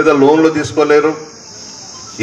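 A man speaking Telugu into a microphone for about a second, then a pause with a steady high-pitched hiss underneath.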